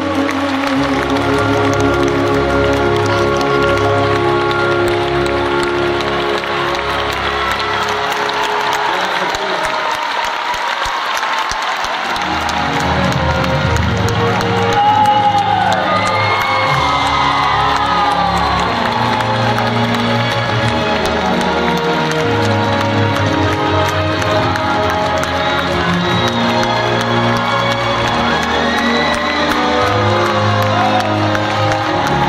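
Live concert music with held chords, under an audience applauding and cheering throughout. The bass drops out briefly around a third of the way in.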